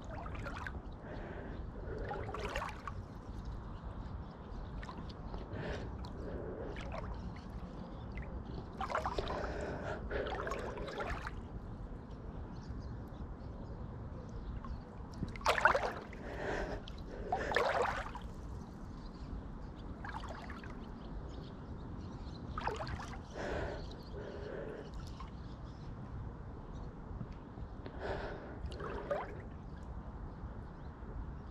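A swimmer's strokes stirring the water right at the microphone: swishing and gurgling water that comes in short bursts every several seconds, with the swimmer's breathing, over a steady low rumble. The loudest bursts come about halfway through.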